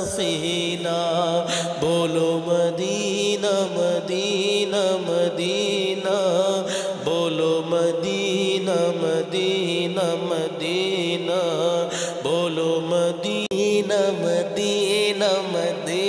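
A man singing an Urdu naat into a microphone in long, drawn-out melodic phrases with winding, ornamented pitch and no clear words, over a steady low drone.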